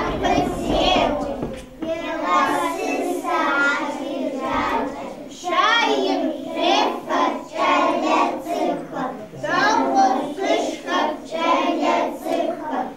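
A group of young children singing a song together in short phrases, with brief breaks between lines.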